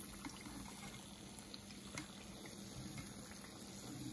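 Gram-flour-battered potato fritters (pakoras) deep-frying in hot vegetable oil: a faint, steady sizzle with scattered small crackles.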